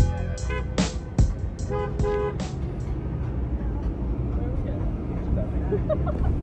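Music with a regular beat playing in a car for the first two and a half seconds, with a few short toots of a car horn among it. After that the beat stops and only the low rumble of the car driving is left.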